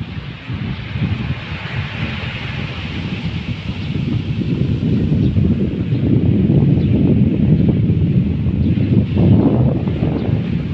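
Wind buffeting the microphone in a rough, gusting rumble that grows stronger about halfway through, with a fainter hiss of wind through coconut palm fronds.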